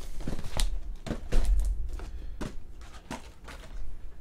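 Cardboard trading-card hobby boxes being handled on a tabletop: a series of irregular light knocks and scuffs as the boxes are shifted and one is lifted, over a low rumble.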